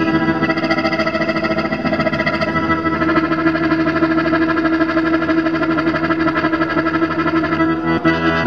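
Piano accordion holding a chord with a fast, even pulsing, then moving on to changing notes right at the end.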